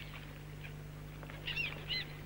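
A few short bird chirps, about a second and a half in and again near the end, over a steady low hum.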